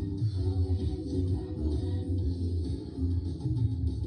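Music from a Christmas stage show, played through a television's speakers and picked up across the room.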